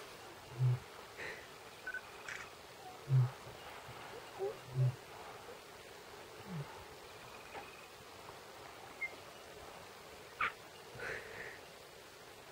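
A lioness giving three short, low grunts in the first five seconds, then a brief rising low call, with a few faint clicks in between.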